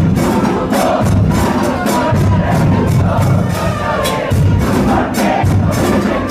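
A stand of football supporters chanting together in unison over a regular percussion beat.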